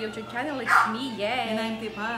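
Women's voices talking animatedly, with some high, sharply rising and falling pitches.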